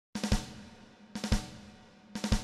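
Intro music on drums: a quick figure of three hits, played twice about a second apart, each fading out after the last hit.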